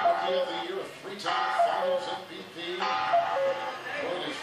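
Sound played through a phone speaker: a short musical phrase repeating about every one and a half seconds, with a voice underneath.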